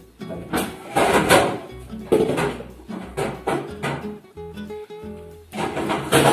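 Background music with plucked and strummed acoustic guitar.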